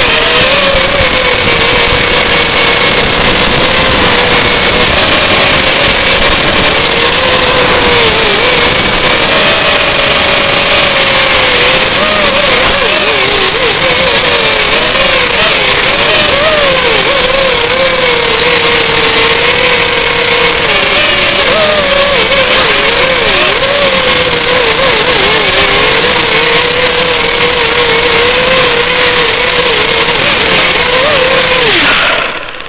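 Eachine Racer 250 quadcopter's brushless motors and propellers whining in flight, the pitch wavering up and down constantly with throttle changes. Heard through the quad's onboard microphone over the analog video link, with hiss and a steady high-pitched tone underneath.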